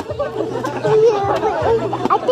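Overlapping voices of children and adults chattering and calling out over one another.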